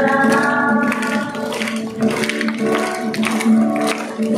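A group of schoolchildren singing a song together in unison, held notes gliding between pitches, accompanied by strummed acoustic guitar.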